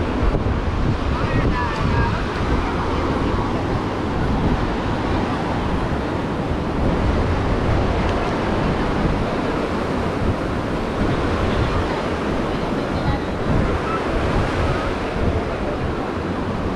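Surf washing onto the shore, a steady rush of waves, with wind buffeting the microphone and the chatter of a crowded beach behind it.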